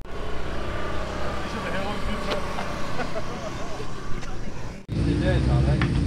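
Engine noise under faint voices: a distant engine holds one steady note for about three seconds, sinking slightly in pitch. After a sudden break near the end, a louder steady low engine rumble takes over.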